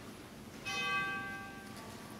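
A bell-like chime struck once, about two-thirds of a second in, ringing out and fading away over about a second.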